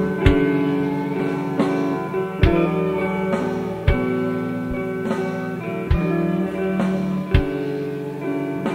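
Slow live band music: sustained, ringing guitar chords over a slow, sparse beat, with a strong hit about every one and a half to two seconds.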